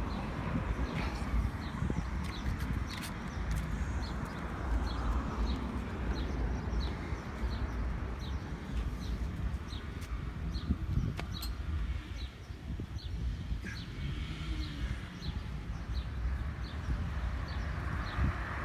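A small bird chirping, short high notes repeated about every half second, over a steady low rumble of wind and background noise.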